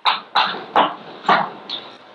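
Chalk on a blackboard as a word is written out: a quick run of short scraping strokes, about four in the first second and a half and a fainter one after, then the writing stops.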